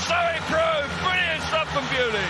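A man's voice commentating on the race, talking quickly throughout, with a steady low background noise underneath.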